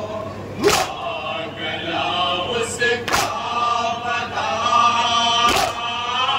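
A group of men chanting a noha, a mournful Urdu lament, in unison over a microphone, with the mourners' hand slaps on their chests (matam) landing together three times, about every two and a half seconds.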